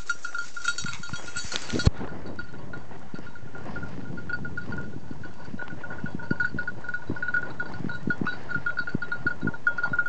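A bird dog's collar bell jingling continuously and quickly, over footsteps brushing and crunching through dry grass. There is one sharp knock about two seconds in.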